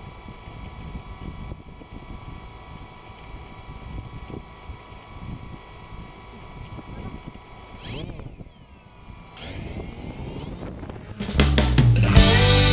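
DJI Phantom quadcopter's electric motors and propellers whining steadily, then shifting and rising in pitch as it lifts off a couple of seconds before the end. Music comes in near the end.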